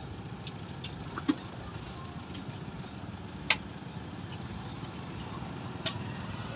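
Steady low hum with three short sharp clicks, the loudest about three and a half seconds in.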